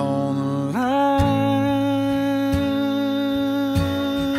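Acoustic country music: a sung phrase ends, then a fiddle slides up into one long held note over a few acoustic guitar strums.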